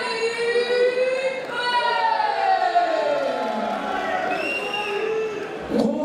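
A voice drawn out in long held notes, sung or called, one note sliding steeply down in pitch about two seconds in.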